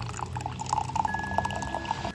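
Brewed coffee pouring from a French press into a ceramic mug, a steady splashing stream.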